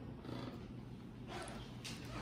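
Metal spoon scooping through yogurt and granola in a stoneware bowl, with two brief scrapes near the end, over a low steady hum.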